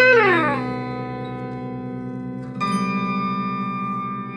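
Electric guitar, Stratocaster-style, playing a note that slides down in pitch over about half a second and then rings on. A second note or chord is struck about two and a half seconds in and sustains, slowly fading.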